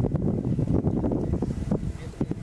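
Wind buffeting the microphone: an uneven low rumble that flutters throughout.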